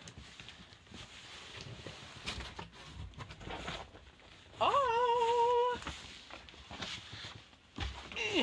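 Large cardboard presentation box being handled and its lid lifted: faint rustling and scraping of the board. About four and a half seconds in comes a single high-pitched vocal sound, rising at the start and then held steady for about a second.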